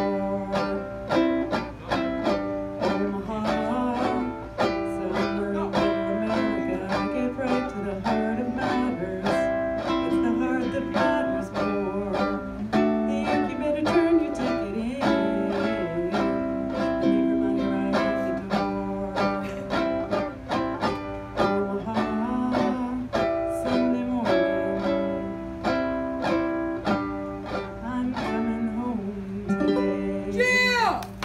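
Ukulele strummed in a steady rhythm, playing chords, with a woman's voice singing over it in places.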